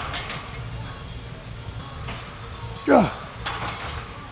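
A man's short, strained grunt falling in pitch, about three seconds in, on a rep of Smith-machine bent-over rows. Light metallic clicks of the bar come near the start and just after the grunt.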